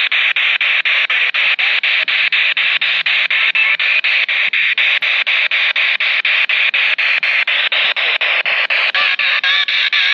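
Handheld radio used as a ghost box, sweeping through FM stations: loud static chopped into short bursts about five times a second. Brief snatches of broadcast sound come through near the end.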